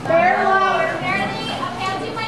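Crowd of children chattering and calling out, several high voices overlapping without clear words.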